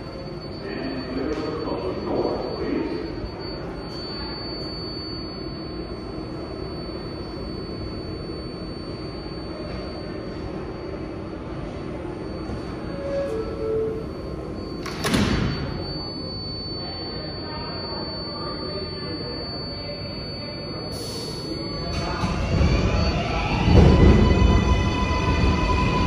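R188 7 subway train standing in an underground station with its doors open, its equipment humming steadily over the station's echoing background noise. A single sharp clunk comes a little past halfway, a short hiss follows a few seconds later, and a low rumble builds near the end.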